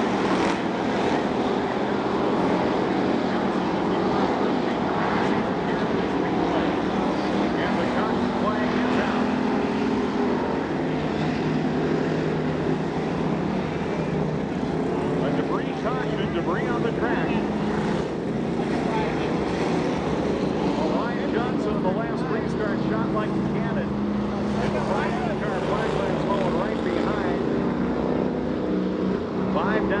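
Street stock race cars' V8 engines running at low pace on a dirt oval during a caution period, a steady engine drone from several cars at once, with voices in the crowd.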